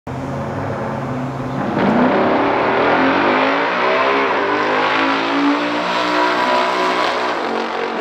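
Two big-block V8 drag cars, a 1969 Chevrolet Corvette L88 427 and a 1967 Dodge Coronet R/T 426 Hemi, hold steady revs at the start line. They launch together a little under two seconds in, and their engine notes climb in pitch and grow louder as the cars accelerate away.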